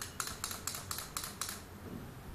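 Mechanical toy chicks clicking: a rapid, even run of light clicks, about eight a second, that stops about one and a half seconds in.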